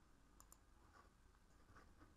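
Near silence with a few faint clicks of a computer mouse and keyboard: a pair about half a second in, then single clicks about a second in and near the end.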